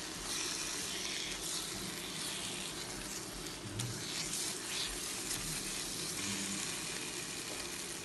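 Thick eggplant masala frying in oil in a wok, a steady sizzle, while it is stirred with a spatula.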